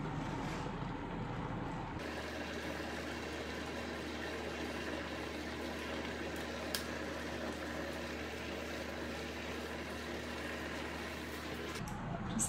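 Handheld garment steamer hissing steadily as it is pressed against a polo shirt to release wrinkles, with a low hum under the hiss that changes abruptly about two seconds in.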